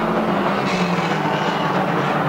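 Engines of several 2-litre banger racing cars running together in a steady, mixed drone as the cars shove at each other in a pile-up.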